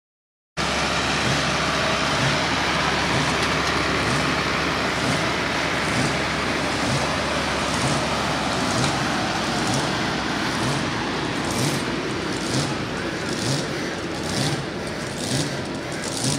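Loud, steady engine noise from a mini rod pulling tractor waiting at the starting line, starting abruptly about half a second in. In the last few seconds it surges rhythmically, about one and a half times a second.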